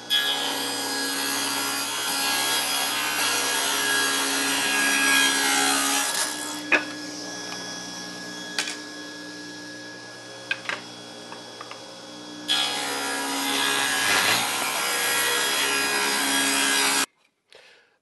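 Table saw ripping two thin oak strips: two cuts of several seconds each, with the saw running more quietly between them and a few sharp clicks. The sound stops suddenly about a second before the end.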